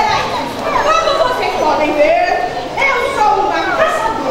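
A crowd of children's voices talking and calling out at once, many high voices overlapping.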